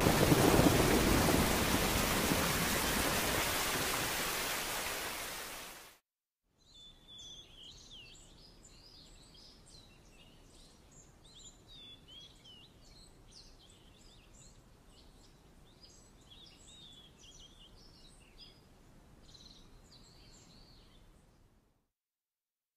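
Heavy rain with a thunderclap, loud at first and dying away over about six seconds before cutting off. After that, birds chirp faintly in many quick high calls until just before the end.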